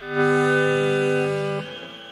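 Electric guitar on a live soundboard recording, holding a loud sustained chord that rings for about a second and a half and then drops away. It leaves a quieter high tone gliding slowly upward, in the improvised section of a hard-rock jam.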